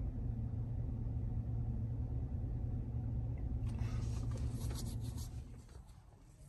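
Steady low rumble of a car cabin on the move, with light rustling from about four seconds in. The rumble drops away near the end.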